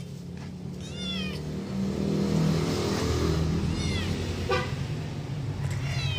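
Siamese kitten mewing three times, short high-pitched cries that fall in pitch, about three seconds apart. Under them runs the steady low hum of a vehicle engine, louder in the middle.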